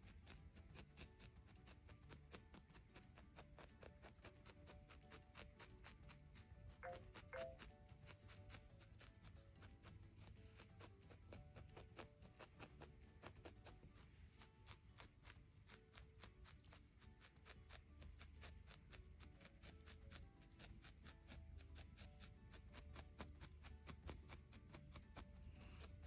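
Faint background music, with soft, quick ticks of a barbed felting needle stabbing into wool, about four a second.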